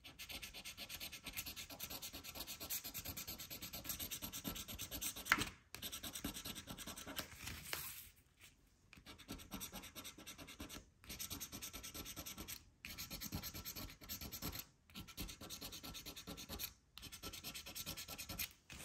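A scratch-off lottery ticket being scratched: quick, rapid scraping strokes across the coating in runs of a second or two, broken by short pauses, with a longer pause about halfway through.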